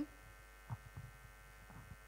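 Faint, steady electrical mains hum from a live PA sound system, with a few soft low thumps about a second in and again near the end.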